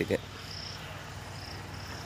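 Insects chirping in short, high, repeated bursts over a steady outdoor hiss.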